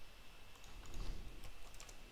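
Faint typing on a computer keyboard: a quick run of keystrokes about half a second in, ending just before two seconds in, clearing the terminal screen.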